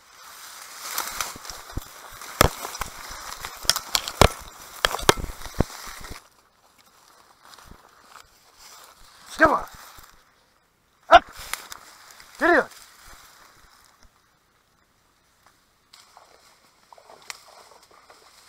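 Dry reed stems crackling, snapping and rustling as someone pushes through a dense reed bed, for about six seconds. Later come two short calls that fall in pitch, with a sharp click between them.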